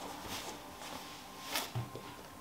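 Quiet room with a few faint rustles and small knocks, and a soft low thump near the end.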